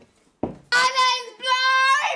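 A young woman singing two long, high held notes in a loud, wailing voice, with a short thump about half a second in.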